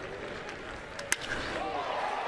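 One sharp crack of a wooden baseball bat hitting a pitched ball about a second in: solid contact that drives the ball deep. It sounds over a steady stadium crowd murmur.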